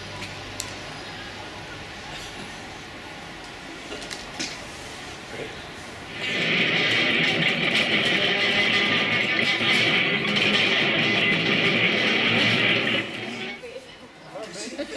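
Electric guitar strummed loudly from about six seconds in, held as a steady, dense chord for about seven seconds and cutting off shortly before the end. Before it there is only a quiet background with a few faint clicks.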